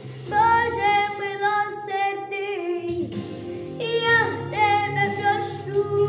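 A young girl singing a Ukrainian song with instrumental accompaniment, holding long notes; a new sung phrase begins about four seconds in.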